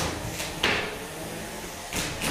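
Hard knocks of 3 lb combat robots colliding in the arena: one at the start, a louder hit with a short ringing about two-thirds of a second in, and another knock near the end.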